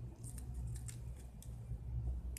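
Small scissors snipping off the leftover ends of ribbon on a ribbon rose, about five short, quick snips.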